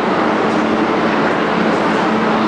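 Metro station din: a loud, steady rush of noise with a low, even hum running under it.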